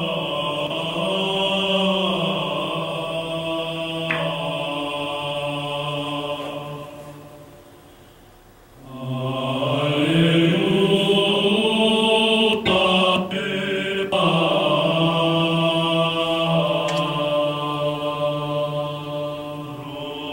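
Recorded Byzantine-style chant: an Alleluia with its verse in Greek, sung as a melody over a sustained ison drone held on two pitches, a lower one and a higher one a fourth above, giving a really beautiful ethereal sound. The singing fades away to a pause about eight seconds in, then comes back in.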